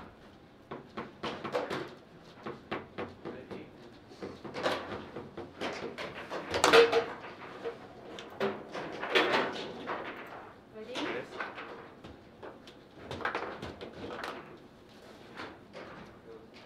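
Foosball table in play: a run of sharp clacks and knocks as the rod men strike the ball and the rods hit the table's bumpers, with the loudest bang near the middle.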